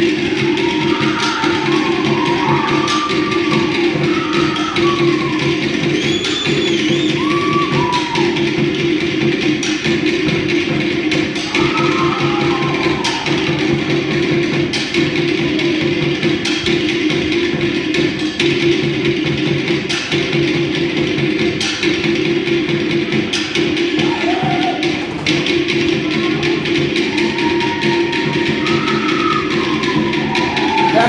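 Fast, steady drumming on wooden log drums, the driving beat that accompanies a Samoan fire knife dance, with short high calls rising and falling over it now and then.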